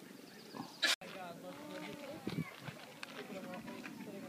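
People's voices talking in the background, with a brief loud rush of noise just before the sound cuts out sharply about a second in, where the footage is edited.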